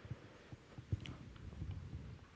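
Faint, irregular soft low thumps from a handheld microphone being handled and carried across the room, over quiet room tone.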